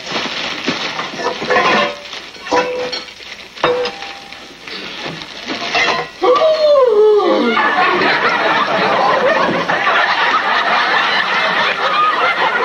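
Metal pots and pans knocking and clinking as they are pulled out of a garbage can. About six seconds in, a voice cries out and slides down in pitch, and a studio audience laughs loudly through the rest.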